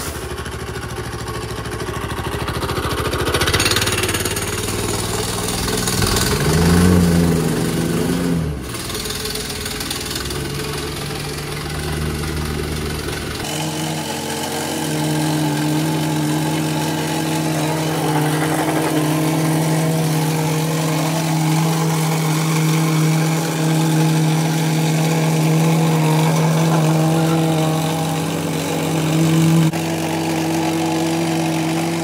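Vibrating plate compactor's small petrol engine running as the plate is worked over a sand bed, its pitch rising and falling briefly about seven seconds in, then running steadily.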